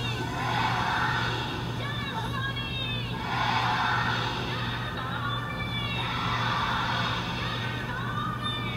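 Film soundtrack: a chorus of women's voices chanting in swelling phrases that come back about every three seconds, over a steady low hum.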